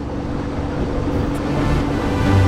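A sailboat's engine running steadily under way, a constant drone over a wash of wind and water noise.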